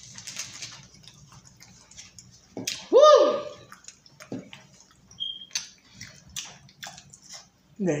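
Twix bars being handled and chewed: scattered small clicks and rustling of foil wrappers and mouth sounds. A loud hummed vocal sound rises and falls about three seconds in, and a shout of "woo" comes at the very end.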